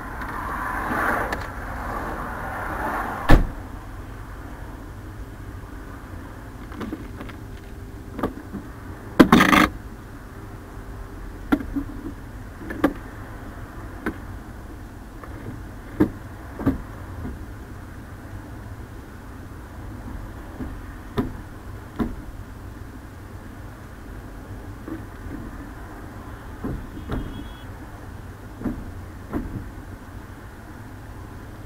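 Steady low road and engine rumble inside a car's cabin, broken by scattered sharp knocks and thumps. The loudest are a single knock about three seconds in and a short burst around nine seconds in.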